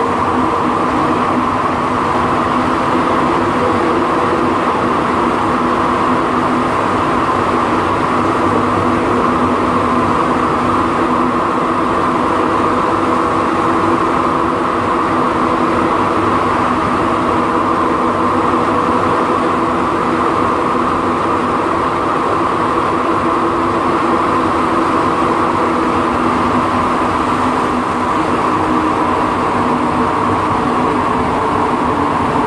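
Inside a Montreal Metro Azur rubber-tyred metro train running at steady speed: a constant rumble with a steady hum of several pitches held throughout.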